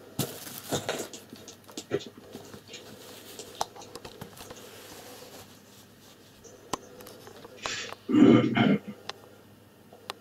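Rustling and scattered clicks from a handheld phone being moved about, then a short loud burst of a person's voice about eight seconds in.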